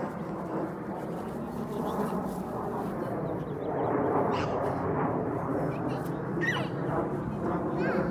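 Jet airliner flying high overhead: a steady, distant rumble.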